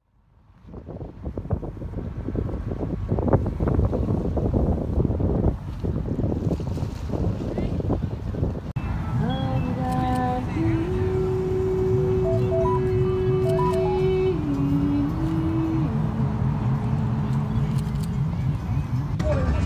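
Outdoor ambience with wind rumbling and buffeting on the microphone. About nine seconds in, slow music of long held notes that step between a few pitches joins over the wind.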